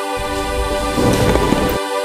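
Background music holding steady sustained notes, overlaid by a rush of deep, thunder-like noise. The noise starts just after the beginning and cuts off shortly before the end, a dramatic sound effect for an announced entrance.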